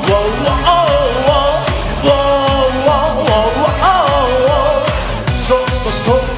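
A man singing loudly into a studio microphone over a rock/metal karaoke backing track with a steady drum beat.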